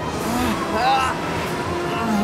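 Animated-show soundtrack: a steady rushing wind effect with a few short vocal grunts of effort and faint background music.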